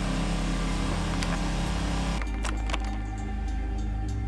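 A steady low engine hum, with a hiss above it that cuts out abruptly about halfway through, and a few faint clicks.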